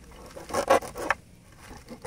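A knife scoring slits through the scaly skin of a whole fish, with short rasping cuts: one quick run of strokes about half a second in, and another starting near the end.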